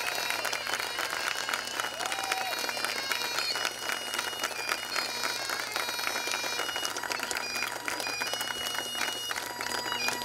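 Crowd of guests applauding with many overlapping hand claps, over music with steady held notes.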